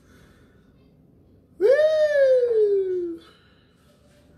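One drawn-out vocal cry of about a second and a half from a high voice. It jumps up in pitch, then slides slowly down.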